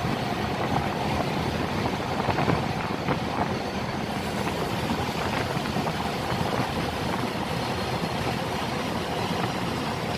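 A small boat's engine running steadily, with water rushing along the hull.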